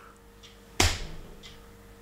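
A single sharp knock or tap just under a second in, fading quickly, over a faint steady hum.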